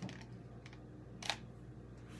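A few light clicks and one sharper tap about a second and a quarter in, from handling a hot glue gun and a plastic spider while gluing it, over a faint steady low hum.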